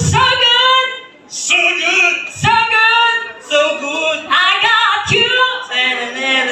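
A person singing short, high-pitched phrases into a microphone, in several bursts with brief breaks between them.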